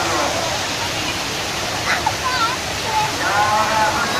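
Steady rush and splash of a large decorative fountain, its tall water jets falling back into the pool and spilling down stepped stone basins. People's voices carry over it, most clearly near the end.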